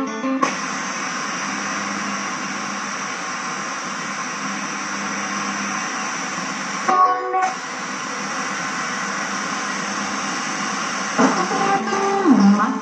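Sharp GX-55 music centre's FM radio giving steady static hiss through its speakers while being tuned between stations. Music cuts off just after the start, a station breaks through briefly about seven seconds in, and another comes in with music near the end.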